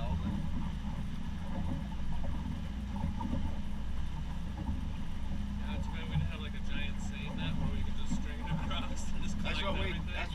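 Motorboat engine running steadily at low speed, a continuous low hum, with indistinct voices over it from about halfway through.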